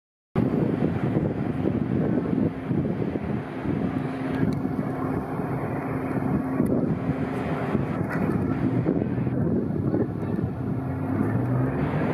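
Steady low rumble of city street traffic, with wind buffeting the microphone.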